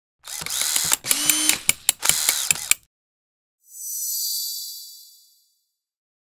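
Animation sound effects: about two and a half seconds of mechanical ratcheting and clicking with several sharp clicks, then after a short gap a high airy whoosh that swells and fades away.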